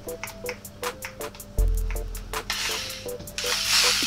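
Background music with a steady beat, a plucked melody and bass notes. About two and a half seconds in, a corded Ridgid JobMax multi-tool's motor comes in with a hissing buzz that grows loud near the end.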